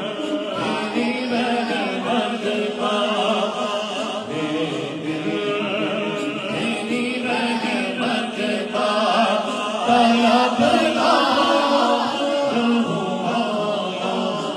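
A man singing a naat, an Urdu devotional poem, into a handheld microphone, his amplified voice carrying long, ornamented lines without a break.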